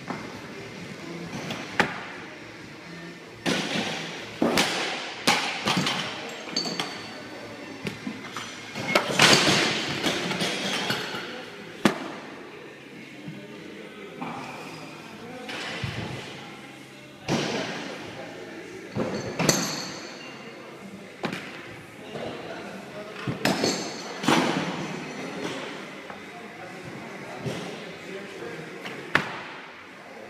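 About a dozen knocks and thuds at uneven intervals from a loaded barbell with bumper plates being set down and lifted on a lifting platform. The loudest and longest comes about nine seconds in.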